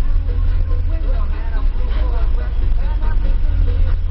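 Steady low rumble of a car interior, with people talking indistinctly.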